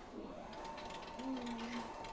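Electric standing desk's lift-column motor running with a faint, steady whine as the desk rises. The motor, which had been jammed, is turning again.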